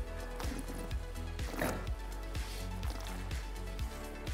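Background music with a steady beat. About a second and a half in there is a short slurp as red wine is sipped from a glass.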